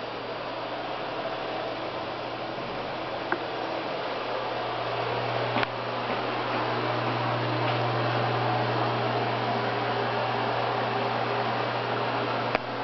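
A ventilation fan running with a steady low hum and hiss, growing louder about halfway through. A few faint clicks sound over it.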